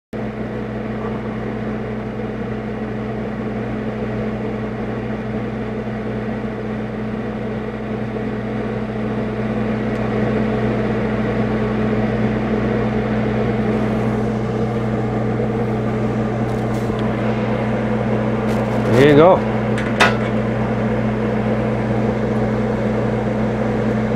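TIG welding machine giving a steady low electrical hum, both while the arc is lit and after it goes out. About three-quarters of the way through there is a short rising voice sound and a click.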